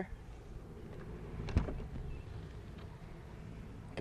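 Faint steady background noise with a single sharp click about a second and a half in.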